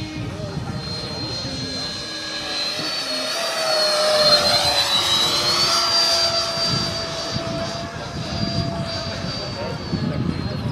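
Electric ducted fan of an RC L-39 Albatros jet model, a 90 mm seven-blade Vasa fan, whining in flight. It grows loudest as the jet passes close, about four to six seconds in, and its pitch dips and then rises again.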